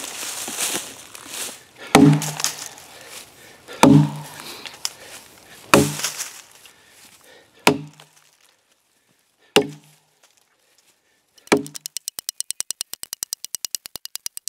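Axe chopping into a resin-filled pine knot (fat lighter) in a log: six single strikes about two seconds apart, each a sharp crack with a short, dull woody thud. Near the end comes a fast, even run of clicks, about ten a second.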